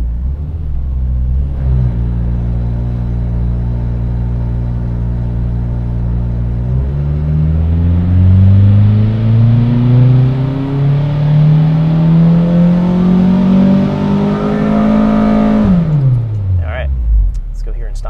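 Naturally aspirated Honda K24 four-cylinder in an Acura RSX running on a chassis dyno: it holds steady revs for a few seconds, then makes a full-throttle pull in fourth gear, its pitch rising steadily and getting louder for about nine seconds. Near the end the throttle is lifted and the revs drop away quickly.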